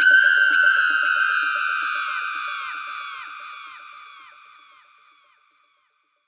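The closing synth note of an electronic dance remix, left ringing out through an echo effect. It repeats a few times a second, each repeat dipping slightly in pitch, and fades away to silence about five seconds in.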